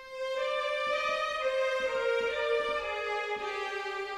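Sampled chamber strings legato patch played as a single melodic line, one note at a time, with the notes joined up so each slides smoothly into the next. About four sustained notes: a small step up at the start, then stepping down twice.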